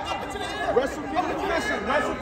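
Several people's voices talking and calling out at once in a gymnasium, overlapping so that no single voice stands out.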